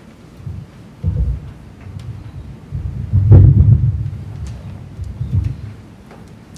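Handling noise from a handheld microphone as it is moved and fitted into its stand: a few low, muffled thumps and rumbles, the loudest about three seconds in.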